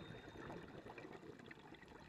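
Faint underwater ambience: a low wash of water noise with scattered faint clicks. A chime's ring fades out as it begins.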